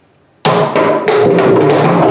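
Mridangam playing a mohra, a rapid, dense run of hand strokes that starts suddenly about half a second in, the tuned right head ringing with a clear pitch under the sharp slaps.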